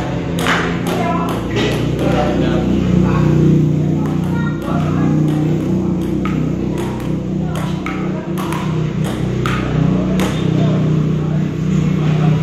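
Table tennis rally: the ball clicking off the paddles and the table in quick runs of about two to three hits a second, with short breaks between rallies about five seconds in and again near the eight-second mark.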